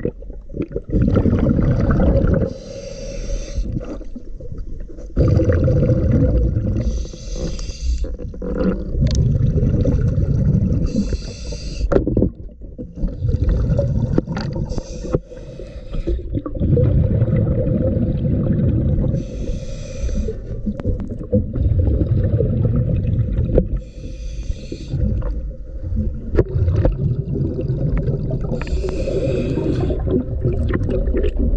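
A diver's breathing regulator underwater: a rhythmic breathing cycle every four to five seconds, a short hiss alternating with loud rumbling exhaust bubbles, over a faint steady tone.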